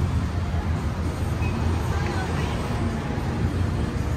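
Steady hum of city road traffic with indistinct voices of people nearby.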